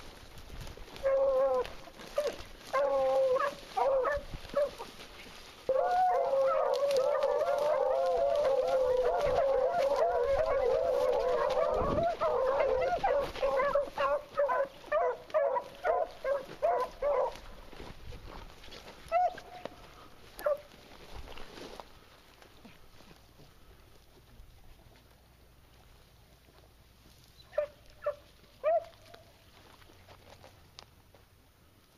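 A pack of beagles baying on a scent line. A few separate bays open it, then many voices overlap in full cry for about ten seconds. The cry breaks up into scattered bays that fade, and two or three single bays come near the end.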